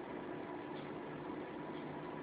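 Steady faint background hiss with a light hum, with no distinct events: the recording's room tone between narrated phrases.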